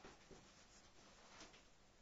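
Faint strokes of a marker pen writing on a whiteboard, a few short scratches over near silence.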